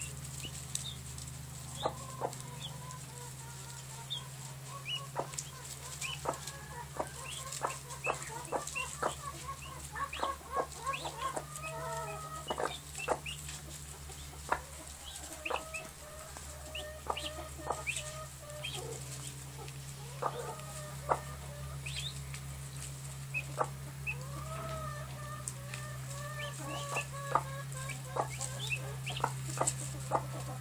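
A hen clucking to her brood while the chicks peep in short high notes, with scattered light clicks and a steady low hum underneath.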